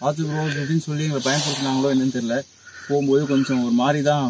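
A man talking, with a faint steady high-pitched insect chirring behind his voice.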